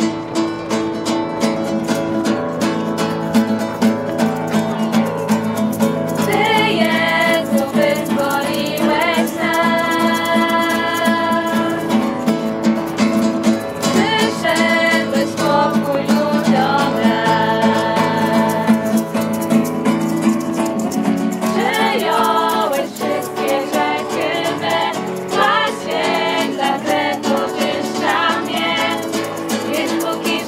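Acoustic guitar strummed in a steady rhythm. About six seconds in, a small group of mostly female voices joins it, singing a Polish worship song together.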